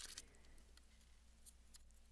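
Near silence, with one sharp click at the very start and a few faint ticks after it.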